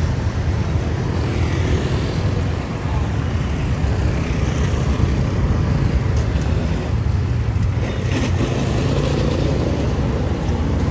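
Road traffic, a steady rumble of passing vehicles, with indistinct voices.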